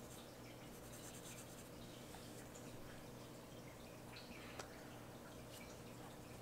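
Very faint scratching of a black felt-tip marker on paper as small areas are coloured in, barely above room tone, with one small tick about four and a half seconds in.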